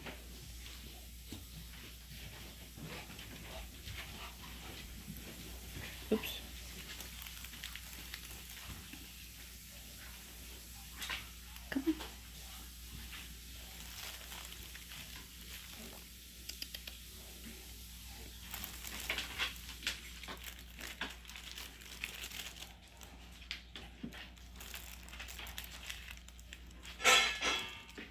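A dog nosing and mouthing torn stuffed toys, with soft crinkling, rustling and scattered light taps as it moves among them, and a louder burst of rustling near the end.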